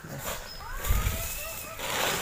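A plastic tarpaulin and dry coconut fronds rustling and crinkling as they are handled and pulled back, growing loud near the end, with a dull thump about a second in.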